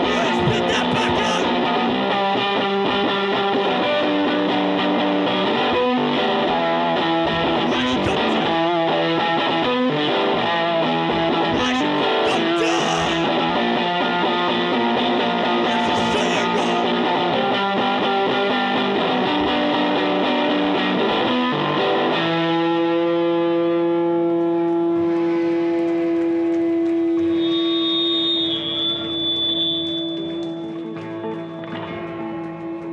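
Hardcore/emo band playing with distorted electric guitar. About 22 seconds in the full-band playing stops, leaving held notes ringing out, with a high ringing tone as it fades near the end.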